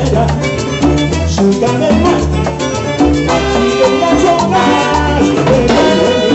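Live Latin dance band playing salsa-style music: timbales and percussion keeping a steady beat under brass and other instruments.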